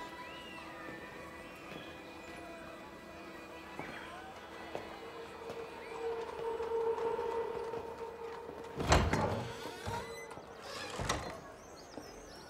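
Dramatic film score of sustained, held tones swelling in the middle, with two heavy thuds near the end, the first the loudest.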